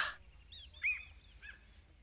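Birds chirping faintly in the background, a few short separate chirps with the loudest about a second in.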